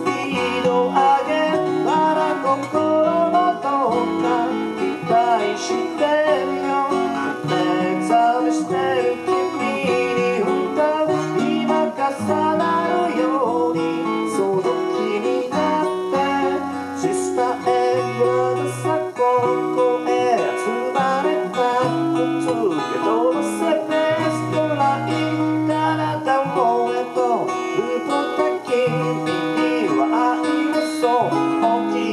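Live acoustic guitar and a second plucked string instrument playing a song together, with a steady run of picked and strummed notes.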